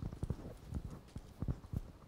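A run of irregular low thumps and knocks, several a second, loudest about one and a half seconds in.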